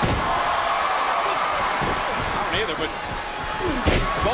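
Wrestlers hitting the ring mat: a slam at the start and a louder one near the end, over steady arena crowd noise.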